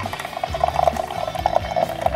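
Single-serve coffee maker brewing, its pump buzzing steadily as coffee streams into a metal-lined tumbler, over background music.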